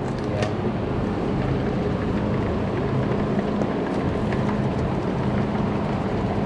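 A steady machine hum with a low drone and an even rushing noise, and a few faint ticks.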